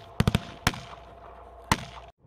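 Rifle shots on a firing range: a quick group of three shots just after the start, then two single shots about a second apart.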